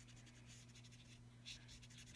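Faint scratching of a Copic marker's nib stroking across cardstock as it colours in, a little louder once about one and a half seconds in, over a steady low hum.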